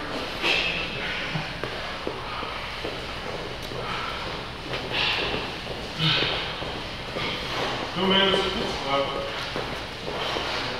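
People exercising in a gym: short bursts of breath and movement over a steady background of voices in the room, with a voice standing out about eight seconds in.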